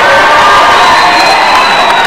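Large crowd cheering and shouting loudly in response to a speech, with a thin high tone held through the second half.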